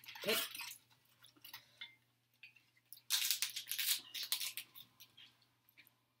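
Close-up chewing of crunchy green papaya salad: scattered small clicks, then a dense run of crunching from about three seconds in that lasts a second or so, over a faint steady low hum.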